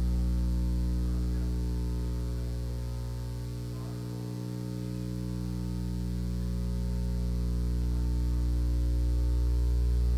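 Steady electrical mains hum from the sound system, dipping slightly about four seconds in and swelling back, with a faint distant voice asking a question off-microphone.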